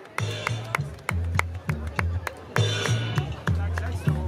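A live band starting a song: a pulsing bass line with drum-kit hits and a sharp percussion tick about four times a second.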